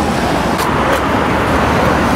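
Steady urban road traffic noise: a continuous rumble and hiss of passing cars, with a couple of short clicks a little over half a second in.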